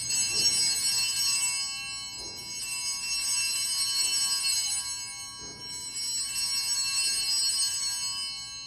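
Altar bells (a cluster of small handbells) shaken in three rings, each a shimmering jingle that swells and fades, rung as the host is elevated at the consecration.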